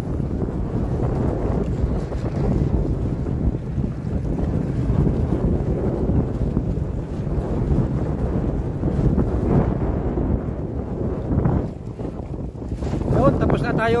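Wind buffeting the microphone on an open boat: a steady low rumble that eases briefly about twelve seconds in.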